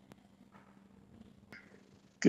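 Near silence on a remote video link: a faint steady hum with two faint clicks.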